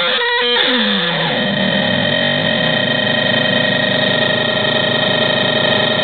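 Homemade DIY drone synthesizer being played by turning its knobs. Stuttering pitched tones in the first half second glide down in pitch, then settle into a dense, steady drone of many held tones over a gritty noise.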